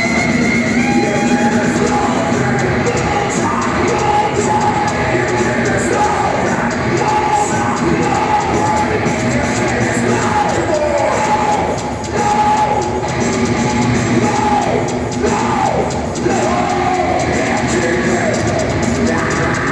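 A heavy metal band playing live in an arena, distorted electric guitar to the fore over bass and drums.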